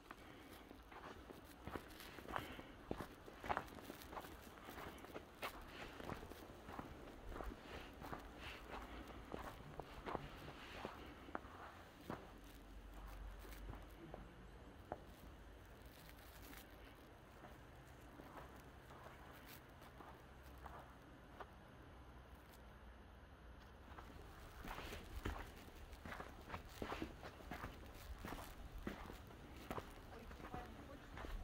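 Faint footsteps of someone walking on a snow-covered path, stopping for a stretch in the middle and starting again near the end.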